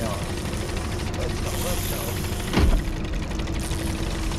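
Outboard motor running steadily at trolling speed, with one sharp knock a little past halfway through.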